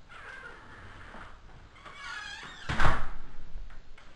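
A front door swinging shut, its hinges squeaking, then closing with a thud just before three seconds in.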